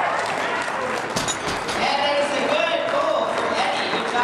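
A loaded barbell is set down on the lifting platform with a single heavy thud about a second in, after the deadlift lockout. Several voices are shouting over it.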